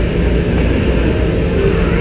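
Loud, steady low rumble of an indoor rink's background noise, with a few faint held tones above it.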